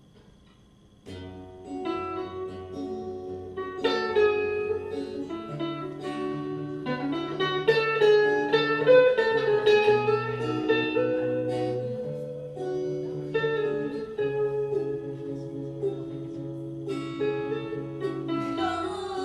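Two acoustic guitars playing a song's instrumental introduction, starting about a second in, with a steady bass line under the chords.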